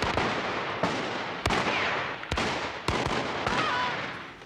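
Handgun shots in a film gunfight: about six sharp shots, one every half second to second, each echoing in a large room.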